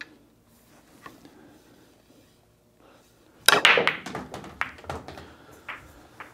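A nine-ball break shot about three and a half seconds in: a sharp crack of cue on cue ball into the rack, then a quick run of pool balls clacking off each other and the cushions for about two seconds as the rack scatters and balls are pocketed. Before it, only faint taps.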